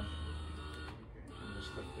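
Smart Lifter LM electric boot hoist's motor running steadily as it winches a folding wheelchair up off the ground.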